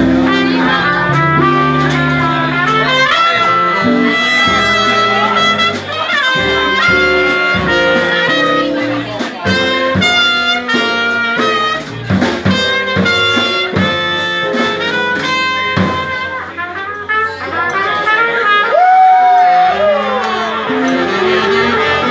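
Live jazz band playing, with trumpet leading melody lines together with saxophone over a drum kit, and a bent, gliding note near the end.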